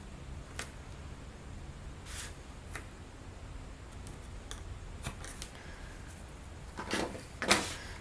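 Quiet handling sounds of quarter-inch double-sided tape being pulled off its roll and pressed along the edge of cardstock: scattered soft clicks and rustles over a low steady hum, with two louder taps near the end.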